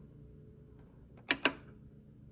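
Two short, sharp clicks in quick succession a little over a second in, over quiet room tone.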